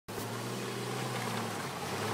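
Off-road SUV engine running steadily at low revs, a low even hum whose pitch sags slightly near the end.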